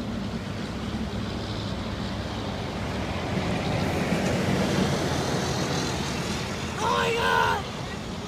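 Steady road traffic noise that swells as a vehicle passes in the middle, with a brief voice call near the end.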